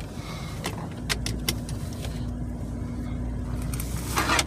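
Car engine running, heard inside the cabin as a steady low hum that strengthens about a second in, with a few sharp clicks in the first second and a half.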